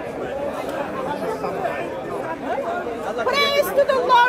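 Background chatter of several people talking at once, with one clearer voice coming in near the end.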